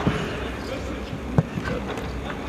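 A football being kicked on a grass pitch: one sharp thump about one and a half seconds in, over the low murmur of players' voices.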